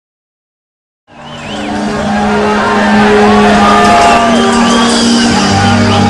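Live band music with a crowd, rising in quickly about a second in and then holding loud with sustained chords.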